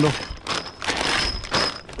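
A clear plastic bag of hardware being pulled out of a cardboard box: crinkling and rustling with a few light knocks of cardboard and metal, and a faint thin high ring through the middle.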